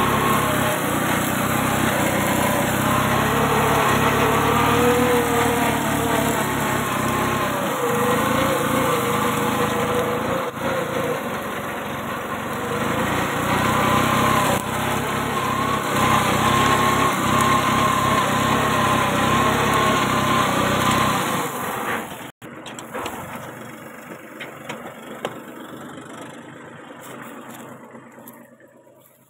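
Kubota 21 hp mini tractor's diesel engine running steadily under load while pulling a fertilizer-drilling cultivator through the field. About 22 seconds in, the engine sound drops off abruptly, leaving a much quieter sound.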